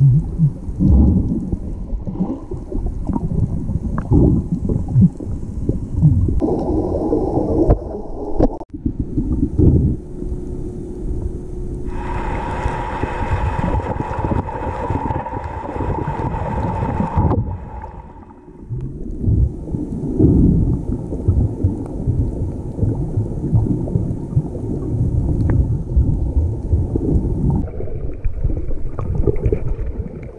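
Muffled underwater sound of a submerged camera: a continuous low churn of moving water with irregular knocks and bumps. For about five seconds in the middle, a steady hum with a few held tones joins in.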